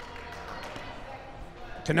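Quiet play sounds in a large hall: a few light taps of a ball and players' feet on a concrete floor over a low murmur of voices.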